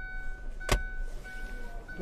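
A single sharp plastic click about three-quarters of a second in as the centre-console armrest lid of the car is handled, over a faint steady high tone.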